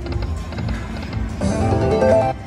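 Autumn Moon video slot machine spinning its reels, with a run of quick clicking ticks, then a loud burst of chiming tones about a second and a half in as the reels settle on a small win.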